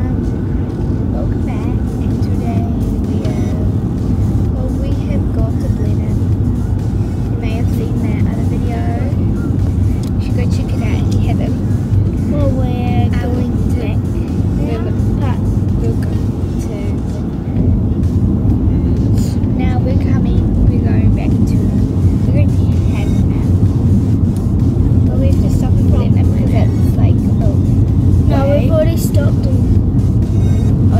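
Steady low road and engine rumble inside a moving car's cabin, growing louder about halfway through.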